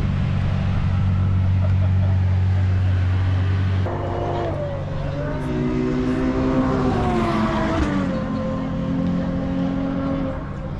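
Ferrari sports car engine running with a steady low idle note. About four seconds in, the sound changes abruptly to higher engine notes that rise and then fall away.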